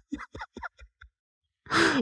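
A man's voice in a pause of talk: a few faint mumbled fragments, then a short audible breath into a close microphone, sigh-like, near the end.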